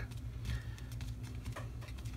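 Damp sponge dabbed and rubbed on painted cardstock: faint, irregular soft taps over a low steady hum.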